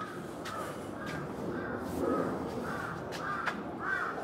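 A bird calling over and over, about two short calls a second, the calls growing louder toward the end. A few sharp clicks sound between the calls.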